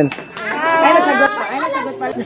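Speech only: several people talking at once in a small crowd.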